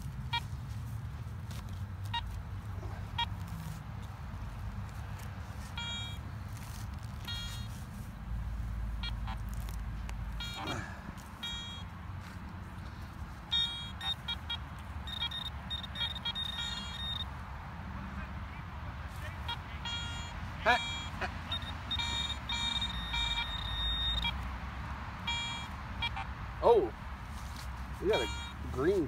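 Metal detector giving short, high electronic beeps as it sounds over a metal target in the dug hole; around the middle and again later the beeps run into longer steady tones. A low rumble lies underneath throughout.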